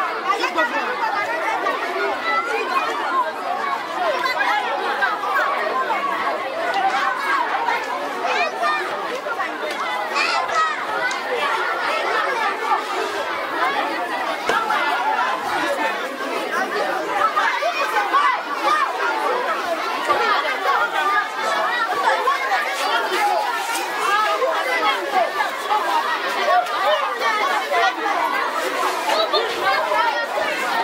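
A crowd of schoolchildren chattering and calling out all at once, many overlapping voices in a dense, steady hubbub.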